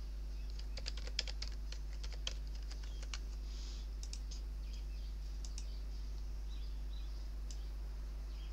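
Typing on a computer keyboard: a quick run of keystrokes in the first few seconds, then scattered single key presses, over a steady low electrical hum.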